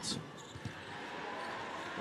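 Basketball arena background during live play: a steady crowd murmur with a couple of faint short knocks.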